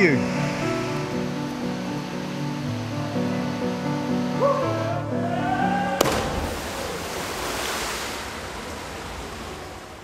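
Background music with stepping notes. About six seconds in there is a sudden splash into a swimming pool, followed by a wash of water noise that slowly fades.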